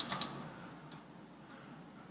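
A few quick clicks of laptop keys right at the start and a fainter one about a second in, pressed to advance a slide presentation that is not responding, over quiet room tone.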